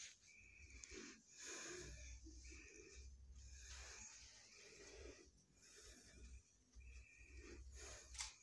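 Near silence: soft breathing close to the microphone, a breath every second or so, over a faint low rumble.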